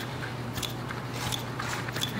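Paper slips being handled close to a clip-on microphone: irregular short rustles and crinkles, over a low steady hum.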